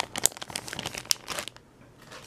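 Clear plastic bag of wax melts crinkling as it is handled and set down: a quick run of sharp crackles that stops about a second and a half in.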